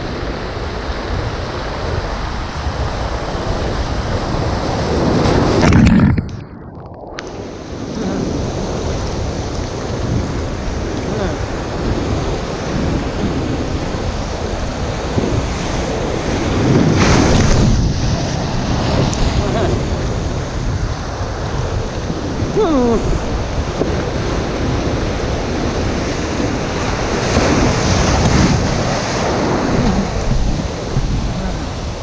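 Breaking surf churning and washing close around the microphone, with wind buffeting it. The waves surge loudest about six seconds in, then the sound goes briefly muffled, and they surge again around the middle and near the end.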